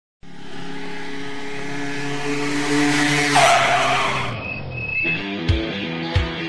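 Intro sound effect of a car engine running, with a tyre screech about three and a half seconds in; music with a beat starts about five seconds in.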